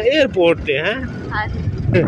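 A voice talking, with a low rumble underneath that grows stronger near the end as the talk stops.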